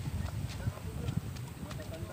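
Wind buffeting the phone's microphone in uneven low gusts, with a few light ticks and faint voices in the distance.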